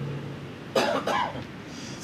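A person coughing once, briefly, a little under a second in, during a pause in speech.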